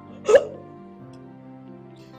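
Soft background music with held notes, over which a woman lets out one short, loud gasping vocal outburst about a third of a second in.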